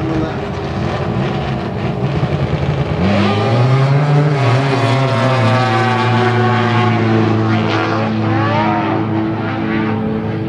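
Turbocharged XF1100 drag motorcycle launching and making a full-throttle pass down the drag strip. A rough engine rumble gives way about three seconds in to a loud, steady engine note that holds to the end.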